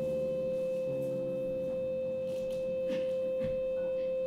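One long, held, nearly pure musical tone at a steady pitch, with quieter sustained lower notes beneath it and a few faint soft clicks, part of a free improvisation.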